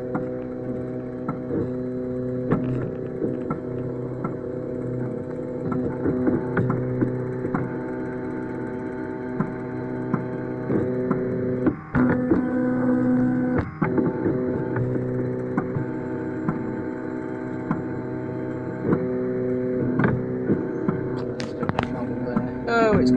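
Velleman Vertex K8400 3D printer's stepper motors whining in several steady tones as the print head travels, the pitch jumping to new notes with each change of move and small ticks at the switches. The printer is laying down the first layer of a print.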